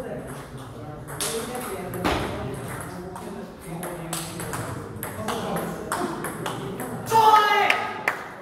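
Celluloid-type table tennis ball clicking off bats and the table in a rally, sharp irregular ticks over background voices. A loud voice is heard about seven seconds in, as the point ends.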